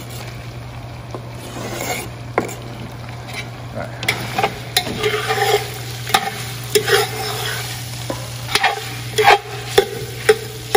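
Pork and chicken frying in a cast-iron pot as diced smoked sausage is tipped in and stirred with a metal spoon: a steady sizzle with irregular clanks and scrapes of the spoon on the pot, busier from about four seconds in.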